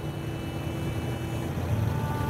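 Low, steady rumble of street traffic with no speech over it.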